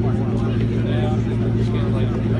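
Ford GT Heritage's supercharged 5.4-litre V8 idling steadily, a constant low hum under nearby voices.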